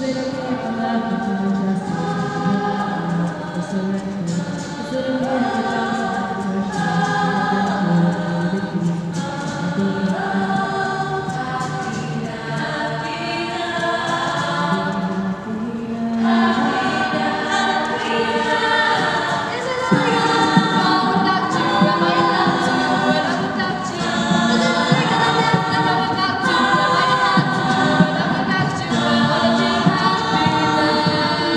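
An all-female a cappella group singing in close harmony, several voice parts layered into sustained chords with no instruments. The sound swells fuller about halfway through and gets louder again shortly after.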